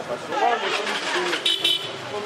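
Voices talking in the street, with a short double toot of a vehicle horn about one and a half seconds in.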